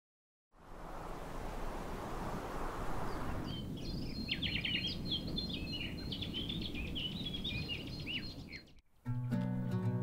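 Outdoor ambience: a steady rushing background, with small birds chirping and twittering from about three and a half seconds in. Near the end the ambience cuts off briefly and music with steady low notes begins.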